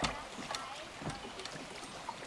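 A kayak paddle dipping and splashing in calm water as the kayak is paddled up to a dock, with a single sharp knock at the very start.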